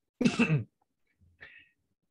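A man clearing his throat once, briefly, followed by a faint short noise.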